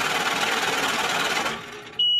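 Digital glitch sound effect: a loud burst of static noise that drops away about a second and a half in.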